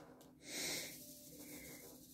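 A woman's short breath, faint and hissy, about half a second in.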